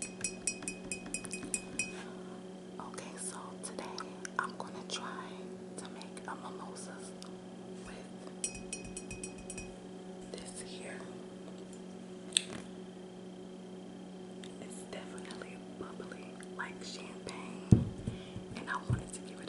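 Long fingernails tapping rapidly on glass, each tap ringing, in two bursts of about a second and a half: one at the start and one about halfway through. Soft whispering comes between the bursts, and there is a loud knock near the end.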